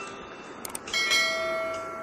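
Two quick mouse-click sound effects, then just after a second in a single bell ding that rings on and slowly fades: the click-and-bell sound effect of a subscribe-button animation.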